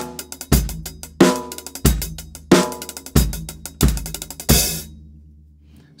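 Pearl drum kit playing a groove with double-stroke rolls on the hi-hat over bass drum and snare, strong hits about every two-thirds of a second with fast even strokes between. About four and a half seconds in it ends on a bright cymbal hit that rings out.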